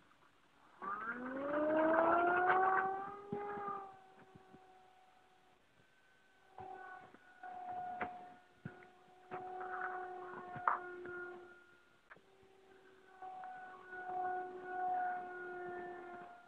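RC model airplane's motor and propeller throttling up for takeoff in a rising whine about a second in, then holding a steady whine that fades and swells several times as the plane flies around.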